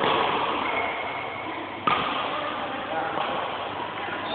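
Indistinct voices murmuring, with one sharp hit a little under two seconds in: a badminton racket striking a shuttlecock.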